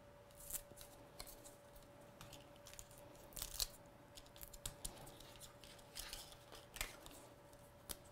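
Card stock being handled and the paper backing peeled off small adhesive foam pads: several short, faint scratchy rustles.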